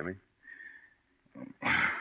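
A man's short breathy laugh near the end, after a pause.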